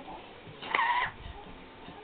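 A short, high-pitched squeal about a second in, with quiet room sound around it.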